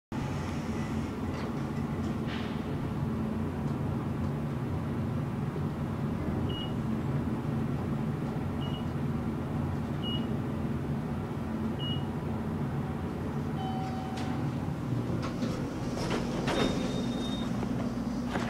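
Steady low hum of a Fujitec traction elevator cab in motion, with four short high electronic beeps spaced a second or two apart and a longer, lower tone partway through. Clicks and knocks and another high tone follow near the end.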